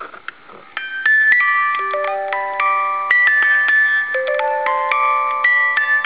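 Clockwork cylinder music box with a steel comb: a few light clicks of the mechanism, then from about a second in it plucks out a slow melody of ringing notes.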